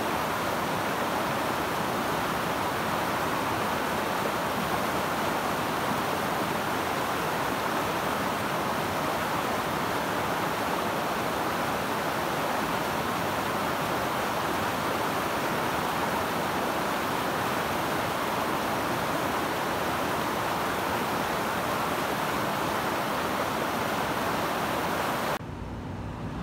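Rushing mountain stream, white water pouring over rocks in a steady, even roar that cuts off abruptly just before the end.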